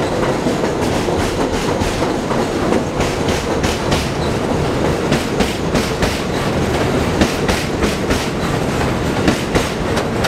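Train of R62A subway cars running out along an elevated track: a steady rumble of wheels on rail, with a quick, uneven clickety-clack of wheels striking rail joints throughout.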